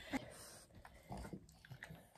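A French bulldog making a few faint, short sounds while being held, with soft handling noises.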